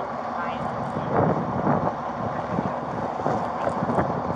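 Wind and handling noise on a body-worn camera's microphone as the wearer walks, with indistinct voices of people nearby, clearest about a second in.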